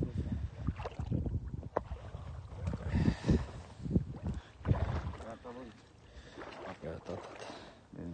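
A hooked Prussian carp (ciortan) splashing at the surface and being scooped into a landing net, with irregular splashes and water sloshing. The splashing is loudest in the first five seconds and quieter toward the end.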